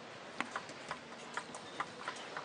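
Table tennis rally: the celluloid-type ball clicking sharply off the rackets and table, about two clicks a second, over a faint hiss of arena noise.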